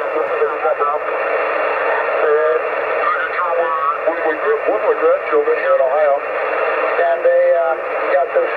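A single-sideband voice received on a Kenwood TS-50 HF transceiver in lower sideband on the 40-metre band, heard as narrow, band-limited speech over a steady hiss. The receiver incremental tuning (RIT) is being turned, shifting the received voice off-tune and then back to zero offset.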